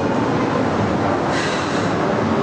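Steady, loud rumble and hiss of passing traffic, turning brighter and hissier about one and a half seconds in.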